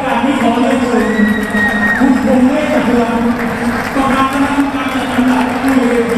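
Stadium crowd noise: many voices shouting and talking at once, with one steady high tone lasting about a second near the start.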